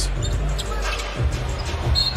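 A basketball dribbled on a hardwood court, low bounces landing about 1.2 and 1.8 seconds in, over steady arena crowd noise. A brief high whistle sounds near the end.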